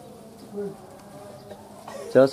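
Faint, steady buzzing of a flying insect close to the microphone, with a brief low call about half a second in.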